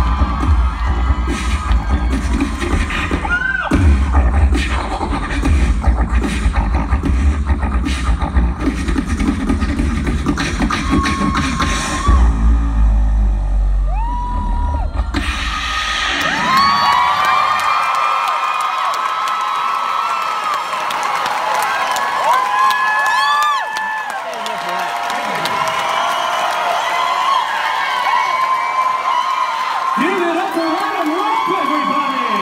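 Vocal percussion solo: a beatboxer imitating a drum kit with deep kick-drum bass and sharp snare and hi-hat sounds, while the crowd whoops. About halfway through the beat stops and the crowd cheers and whoops.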